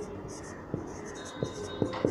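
Whiteboard marker writing on a whiteboard: a run of short, soft scratchy strokes, with a few light ticks as the tip meets the board.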